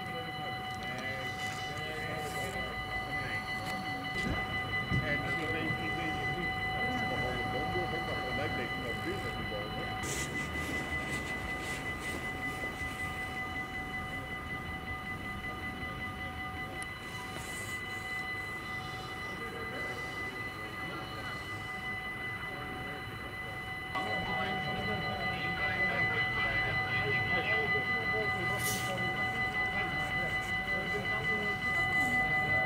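Level crossing warning bell ringing without a break while the crossing stays closed, over a low murmur of distant voices. It gets louder about three-quarters of the way through.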